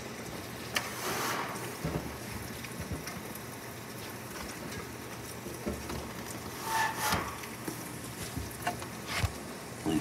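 Steady hiss of rain during a thunderstorm, with scattered light taps and clicks.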